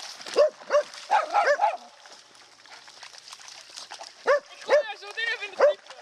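Spitz-type dogs barking in short, high yaps: a run of barks in the first two seconds, a quieter pause, then another run from about four seconds in.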